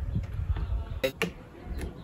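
Plastic bottle cap being twisted off and handled, giving a few light clicks and knocks over a low rumble.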